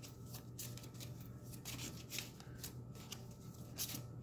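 A deck of oracle cards (her karma deck) being shuffled by hand: a run of quick, irregular soft card snaps.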